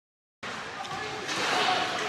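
Dead silence for the first half second at an edit cut, then the sound of an ice hockey game in a rink: an even hiss of arena noise that grows louder.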